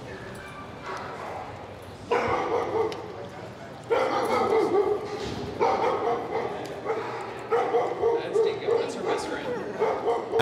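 Several dogs barking and yipping, the sound coming in sudden surges that build louder over the first eight seconds.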